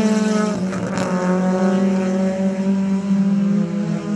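Honda Civic hatchback race cars running at high revs as they pass along the circuit, engines holding a steady high note.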